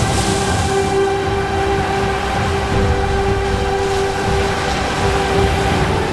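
Ocean waves breaking and splashing against a rocky shore, heard under background music of long held notes.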